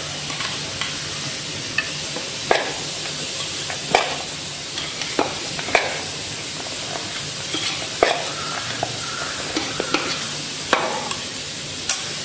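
A cup scooping and pressing into damp rice flour in an aluminium bowl. It gives about ten light knocks and scrapes at uneven intervals over a steady hiss.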